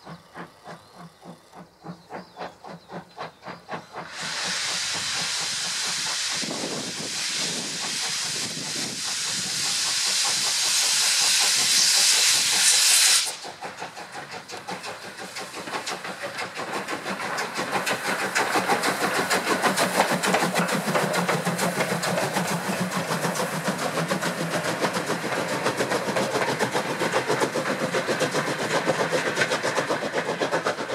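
Steam locomotive on the move: faint, regular exhaust chuffs at first, then a loud steam hiss starts about four seconds in, swells, and cuts off suddenly after about nine seconds. The engine's rapid, steady chuffing and wheel noise follow, growing louder as it passes.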